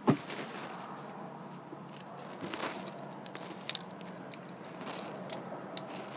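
Chevy Colorado pickup's engine running steadily at idle, heard from inside the cab as a low even hum, with a few faint clicks and rustles.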